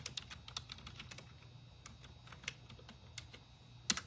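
Typing on a computer keyboard: quiet, irregular key clicks that come quickest in the first second or so, then thin out, with one sharper click just before the end.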